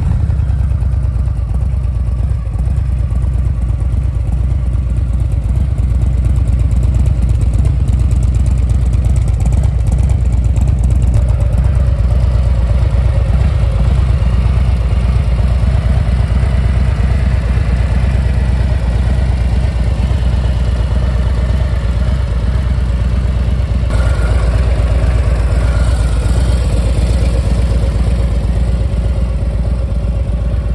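A 2022 Harley-Davidson Low Rider ST's stock Milwaukee-Eight 117 V-twin idles steadily through its exhaust. It was just started already warm.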